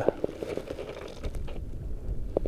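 Low, uneven wind rumble on the microphone, with a few faint clicks and rustles.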